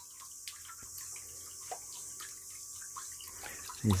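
Small 5-watt solar water pump running, its outflow trickling and splashing steadily into a drum, faint, with small drips here and there.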